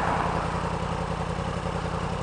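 2016 Yamaha R1's crossplane inline-four engine idling steadily while the bike stands still.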